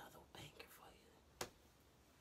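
Near silence: a man's faint, trailing speech in the first second, one sharp click about one and a half seconds in, then quiet room tone.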